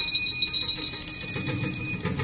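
Bells ringing, several high, held tones overlapping and sustained.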